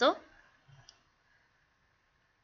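A woman's voice ends a word at the start. Then come faint pencil strokes on paper with a light click, fading to near silence.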